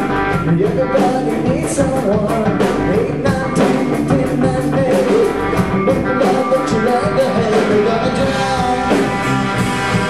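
Live rock band playing: electric guitar, bass guitar and drum kit, with a lead line that bends and wavers in pitch over steady drum beats.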